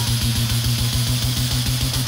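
Competition beatboxing: a held low bass buzz, pulsed rapidly, with a steady hiss layered above it.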